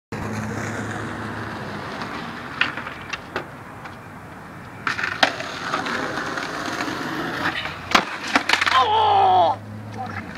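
Skateboard wheels rolling on asphalt, broken by several sharp clacks of the board hitting the ground. Near the end comes a drawn-out yell from a skater bailing.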